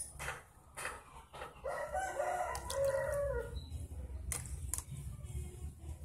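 A rooster crows once, a call of about two seconds starting near two seconds in, the loudest sound here. Around it come short clinks and splashes of a metal spoon scooping water in a plastic tub.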